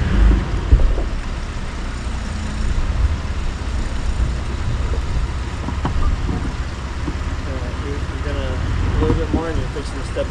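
Mitsubishi Montero engine running low and steady as the 4x4 crawls over rocks, with a couple of loud knocks in the first second as the truck drops over a rock.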